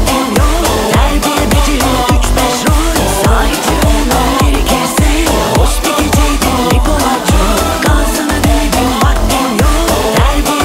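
Instrumental section of a Turkish pop song: a steady electronic dance beat with a deep kick drum and melodic synth lines, and no lead vocal.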